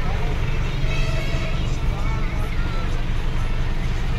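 Inside a moving bus: the steady low rumble of the engine and road noise, with passengers' voices and some music over it.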